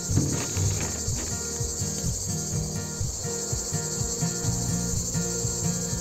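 Honeybees of a colony that left its hive buzzing at close range as they cluster on the ground and crawl back up a ramp into the hive, a low hum that comes and goes. Behind it runs a steady high-pitched insect chirring.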